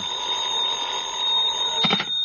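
Telephone bell ringing steadily, cut off by a click near the end as the receiver is lifted. It is a radio-drama sound effect on an old broadcast recording with a narrow frequency range.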